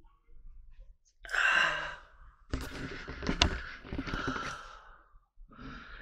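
A man sighing heavily close to the microphone: a short, loud exhale about a second in, then a longer breathy exhale with a sharp click partway through.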